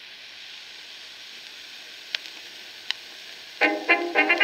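Steady surface hiss of a shellac 78 rpm record as the stylus runs into the groove, with two clicks. About three and a half seconds in, the 1926 dance-band recording starts loudly.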